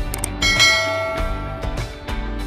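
A short click, then a bright notification-bell ding about half a second in that rings on and fades over about a second: the sound effect of an animated subscribe-and-bell button. Background music plays throughout.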